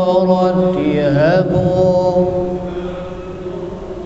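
A man's voice chanting in maqam Rakbi, holding long notes with an ornamented, wavering run about a second in. It falls to a quieter held note after about two and a half seconds.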